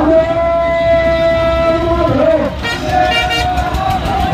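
A voice holding one long, steady note for about two seconds, then a pitch dip and a shorter held note near the end, in a singing or slogan-chanting style.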